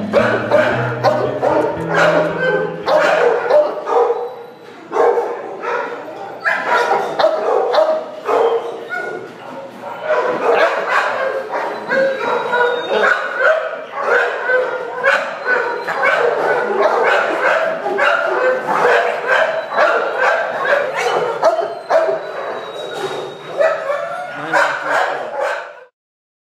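Dogs barking in shelter kennels almost without pause, cutting off suddenly at the end.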